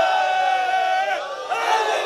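An audience shouting out together in unison: one long held shout that sinks in pitch, then a second shout starting about a second and a half in.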